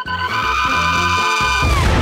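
Cartoon-style bomb scene audio: a long steady tone held over background music, cut off about one and a half seconds in by an explosion sound effect.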